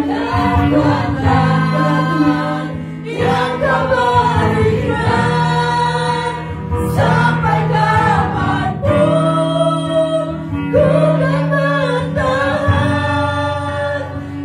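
A woman singing an Indonesian Christian worship song into a microphone in long held phrases, with acoustic guitar accompaniment.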